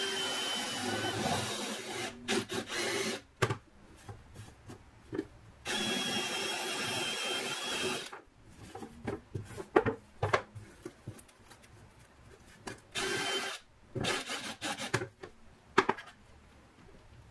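DeWalt cordless drill with a step bit cutting holes through a thin wooden plate, running in bursts: a run of about three seconds at the start, another of about two seconds in the middle, then short bursts near the end. Light scraping and knocks come between the runs.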